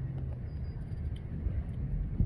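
Steady low outdoor rumble, with no distinct event standing out.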